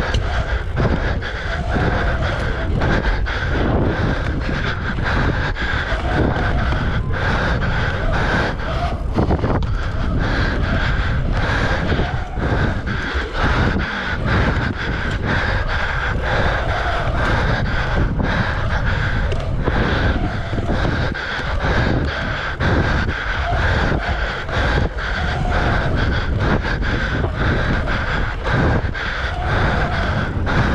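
Wind buffeting an action camera's microphone as a mountain bike rides a pump track at speed, with the tyres rumbling over the track's rollers and berms and frequent irregular knocks and rattles from the bike.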